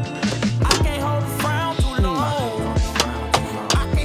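Background music with a steady drum beat, sliding bass notes and a bending melodic line, in a hip-hop style.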